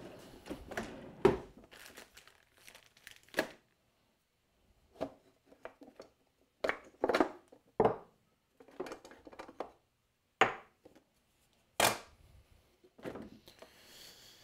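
Rummaging through a wooden drawer of sharpening stones and scraping tools: scattered knocks and clatters as things are shifted and picked out, with rustling between them.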